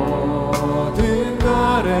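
A slow Korean worship song performed live: vocalists singing over band accompaniment with a held bass and a few sharp drum and cymbal hits.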